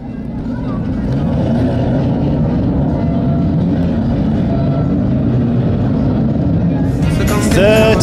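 Engines of a pack of 2-litre banger racing cars running together as they lap the track in a bunch, swelling up over the first second. A commentator's voice comes in near the end.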